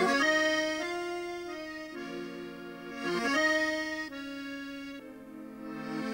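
Accordion playing a slow Swiss folk tune in held chords that change about once a second.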